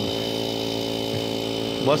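A machine running at a steady, unchanging pitch: a constant hum with a faint high whine above it.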